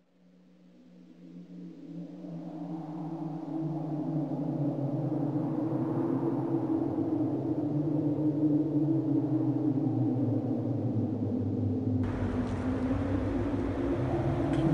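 A low, eerie drone swells up over the first few seconds and then holds steady on a couple of deep sustained tones. Near the end, a broad background rush joins it.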